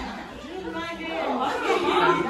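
Several people chatting at once, overlapping voices with no single clear line of speech.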